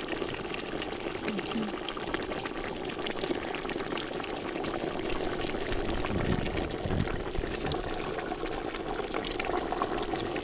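Chicken and potato stew boiling in a large aluminium pot over an open wood fire: a steady bubbling with many small pops. There are two low thumps about six and seven seconds in.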